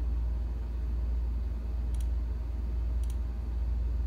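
A steady low hum with two faint computer-mouse clicks, about two and three seconds in, as keys are picked on an on-screen keyboard.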